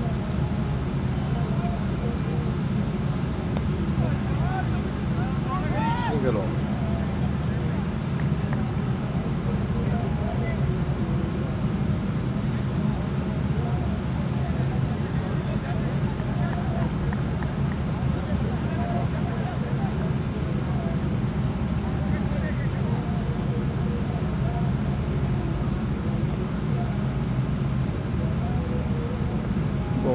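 Steady low outdoor rumble at a cricket ground, with faint, distant voices of players calling across the field and a brief rising call about six seconds in.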